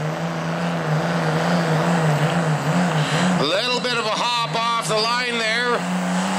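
A 2004 Dodge Ram's Cummins turbodiesel runs flat out under load, pulling a weight-transfer sled. It holds a steady, high drone that wavers only slightly, with voices rising over it about halfway through.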